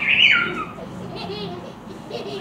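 A toddler's high-pitched squeal, sliding down in pitch over about half a second at the start.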